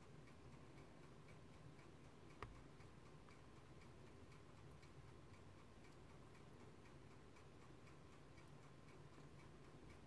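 Near silence: room tone with faint, regular ticking and a faint steady hum, and one sharp click about two and a half seconds in.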